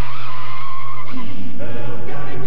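Tires squealing as a small SUV peels away hard: one sustained high screech lasting just over a second, over a steady low drone.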